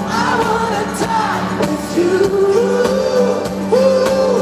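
Live pop-rock band playing, with a male lead singer singing a held, bending melody into his microphone over the band. A sustained low note and repeated drum hits run underneath, all heard through a large hall's PA.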